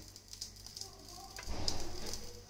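A wooden idiyappam press being squeezed by hand, pushing ragi dough strands out through its die. It makes a rough, scraping noise that starts about one and a half seconds in.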